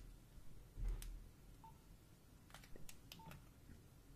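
Faint clicks of phone buttons being pressed, with two short beeps from a Nokia 3310's keypad, the first about a second and a half in and the second a little after three seconds in, as the phone is being switched off.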